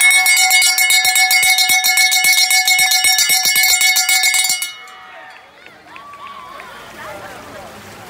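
A cowbell rung rapidly and loudly, about seven or eight strikes a second with a bright metallic ring, for about four and a half seconds before it stops suddenly.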